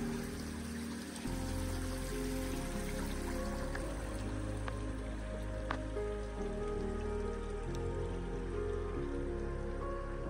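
Background music of soft sustained chords, changing every few seconds.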